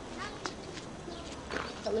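Small birds chirping in short, curved calls from the trees, with a voice and a laugh near the end.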